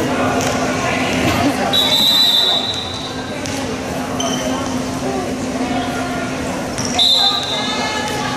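Gym ambience with crowd chatter and a steady low hum. A referee's whistle blows about two seconds in and is held for about a second, then sounds again briefly near the end, while a volleyball bounces on the hardwood floor.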